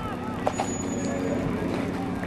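A vehicle engine running steadily with voices in the background. A single sharp bang comes about half a second in.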